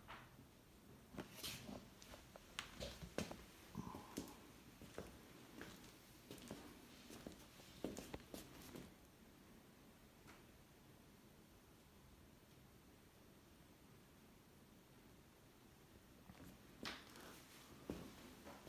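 Near silence: room tone with faint scattered clicks and taps, most of them in the first half and a couple near the end.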